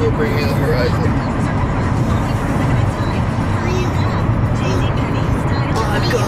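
Steady low road and engine rumble inside a moving car's cabin, with music and faint voices underneath.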